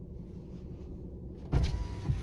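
A car's electric power window motor running briefly, starting about one and a half seconds in, over quiet car-cabin background noise.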